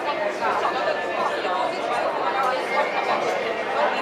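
Crowd chatter: many people, mostly women, talking at once around tables, a steady babble of overlapping conversations with no single voice standing out.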